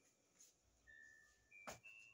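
Near silence, broken by a few faint, short, steady high whistle-like tones and a single sharp click near the end.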